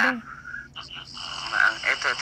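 A dog making a few short, croaky vocal sounds that rise and fall in pitch.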